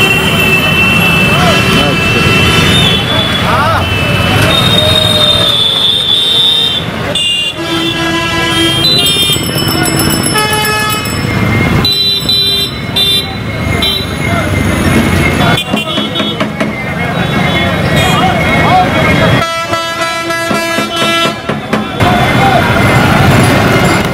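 Busy bus-stand street noise: several vehicle horns honking again and again, some as long held blasts, over running engines and the chatter of a crowd.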